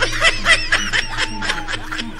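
High-pitched laughter made of quick short laughs in rapid succession, about six a second.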